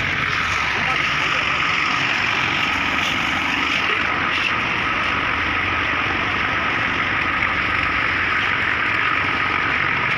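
An engine running steadily with a constant hum, unchanged throughout.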